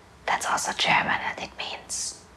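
A woman whispering softly, a few words in a row with an 's' hiss near the end.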